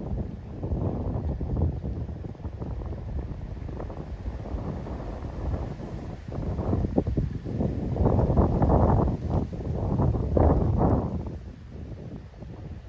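Wind buffeting the microphone, a rumbling gusty noise that swells louder twice in the second half.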